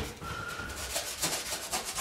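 A sponge scrubbing back and forth over a wet cultured-marble vanity top sprayed with soapy water, working at the stain left where the old faucet sat; a brief knock at the very start.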